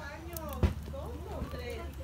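Faint voices talking in the background over a low steady rumble, with one sharp click about a third of the way in.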